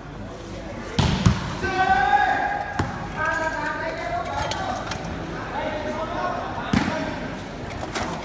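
Volleyball being struck during a rally: a loud double thump about a second in, then single hits near three and seven seconds. Between the hits, people's voices shout over the hall's reverberation.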